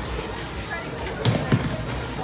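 A bowling ball dropped onto the lane, landing with a heavy thud and bouncing once a quarter second later, over the chatter and music of a bowling alley.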